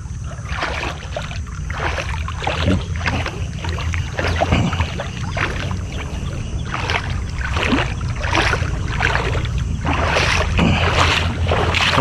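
Footsteps through wet, waterlogged grass, about two steps a second, over a steady low rumble of wind on the microphone.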